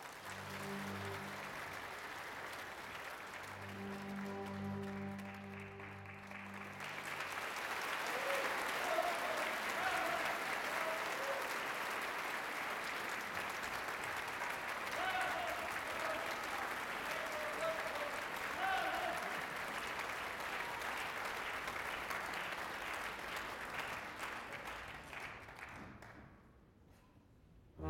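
Theatre audience applauding a ballet number, with the orchestra's held closing notes under the clapping for the first several seconds. The applause grows fuller about seven seconds in and runs on steadily until it cuts off at the very end.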